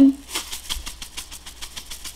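Spice shaker of Montreal steak seasoning shaken in quick, even strokes, the seasoning rattling inside at about six to seven shakes a second.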